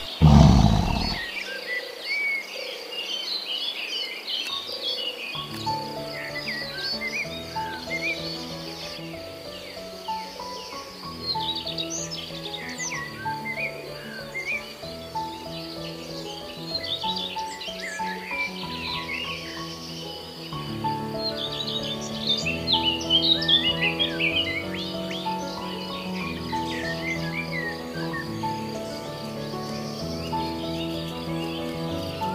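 Small birds chirping and twittering over gentle background music, which comes in about five seconds in. A brief low rush of sound at the very start.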